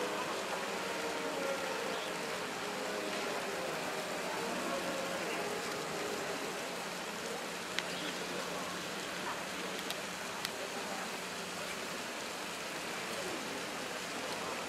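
Outdoor town-square ambience: a steady noisy background with faint voices of passers-by and distant traffic, and a few short clicks around the middle.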